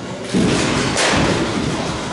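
A single sharp knock of a baseball striking something hard in a batting cage, about a second in, over a low background rumble.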